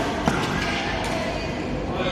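Badminton racket striking a shuttlecock: a sharp crack about a quarter second in, with a fainter click at the start, over a steady hubbub of voices in a sports hall.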